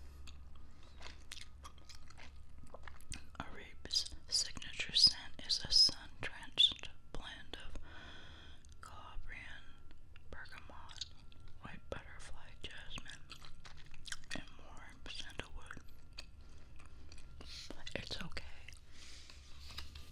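Bubble gum being chewed close to a binaural microphone: wet, clicky mouth sounds, with soft whispering in between.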